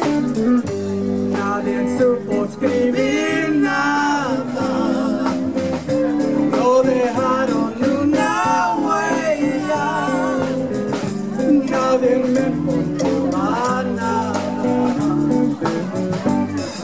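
Live band playing a slow Mexican ballad: sung phrases with wavering held notes over a plucked guitar accompaniment.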